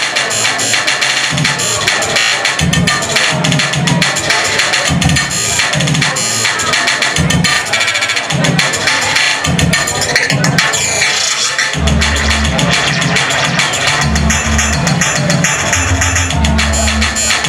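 Live electronic music played over a club PA: fast, dense clicking percussion over a pulsing bass, with a deeper, heavier bass line coming in about twelve seconds in.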